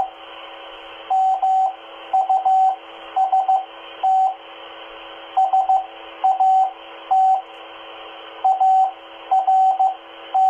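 Morse code (CW) practice received off a 2-metre amateur radio repeater and played through a handheld VHF/UHF transceiver's speaker. A single steady beep tone is keyed in dots and dashes, in short character groups with pauses between them, over a steady hiss.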